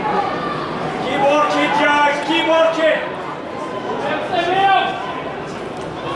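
Men's voices: spectators talking and calling out at a football match, over a steady background haze of the ground.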